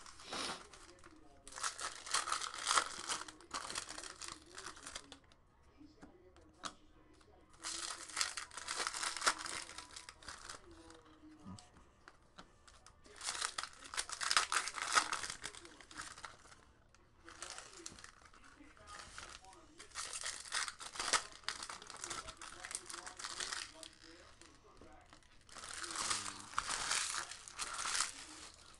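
Foil trading-card pack wrappers crinkling and tearing as packs are opened by hand, in repeated bursts a few seconds long with short pauses between them.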